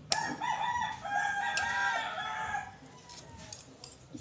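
A rooster crowing once: one call of about two and a half seconds in several rising-and-falling segments, starting right at the beginning. A few faint sharp clicks follow near the end.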